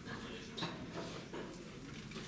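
Quiet room noise of a small club with a seated audience, with a couple of faint soft knocks.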